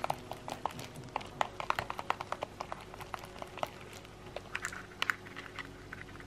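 Applicator brush stirring permanent hair-dye cream in a plastic mixing tray: irregular soft clicks and taps, several a second, as the brush knocks and scrapes against the tray.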